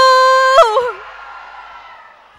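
A woman's voice over a microphone and PA holding one long, high drawn-out word, the end of a greeting to the audience, which breaks off about half a second in. A faint, fading hall noise from the crowd follows.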